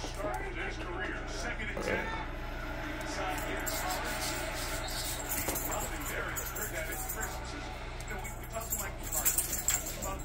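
Faint background voices and music over a low steady hum, with a few small handling clicks.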